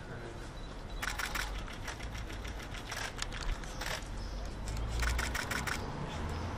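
Camera shutters clicking in three rapid bursts as a group poses for photographs, over a low steady outdoor rumble.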